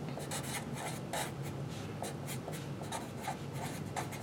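Felt-tip marker writing words by hand on a white surface, a run of short strokes.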